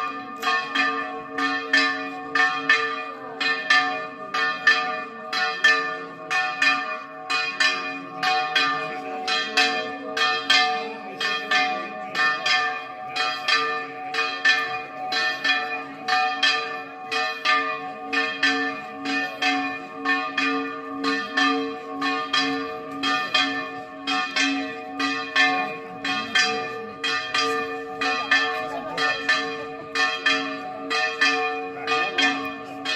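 Church bells ringing a fast, even peal of about two strikes a second, each strike ringing on into the next.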